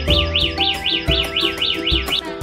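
Background music with a steady beat, overlaid by a high warbling whistle that swoops up and down about four times a second and stops near the end.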